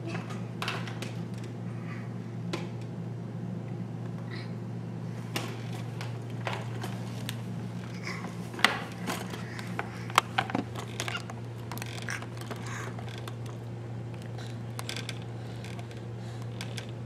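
Scattered plastic clicks and rattles from a baby handling the toys on an activity jumper's tray, the sharpest knocks around the middle, over a steady low hum.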